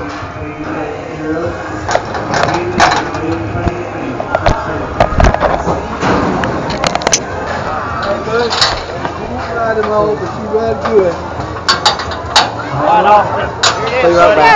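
Indistinct voices with scattered sharp knocks and clanks, as of gear and metal rails being bumped around a bucking chute.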